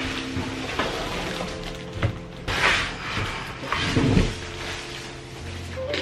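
Background music over the rustling and bumping of a plastic-wrapped electric scooter being handled and lifted out of its cardboard box, with the loudest rustles about two and a half and four seconds in.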